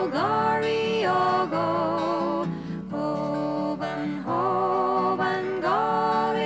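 A woman singing a slow traditional Scottish folk lullaby in long held notes with vibrato. She slides up into a new note at the start and again near the end, over a soft, low, steady accompaniment.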